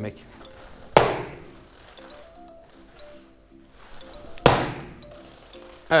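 Two sharp slaps of a foot striking a handheld taekwondo kick paddle in axe kicks (naeryo chagi), about a second in and again some three and a half seconds later, each with a short ringing tail. Soft background music plays underneath.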